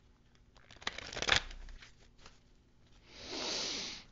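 Oracle cards being handled: a quick riffle of cards about a second in, then a soft swish of cards near the end.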